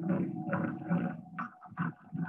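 A man's wordless vocal sound: a drawn-out low voiced sound that breaks up about a second and a half in into a few short vocal bursts.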